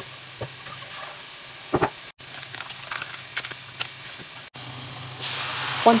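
Food sizzling in a hot cast iron skillet, with a few light clicks of a utensil against the pan. The sizzle turns louder and hissier about five seconds in.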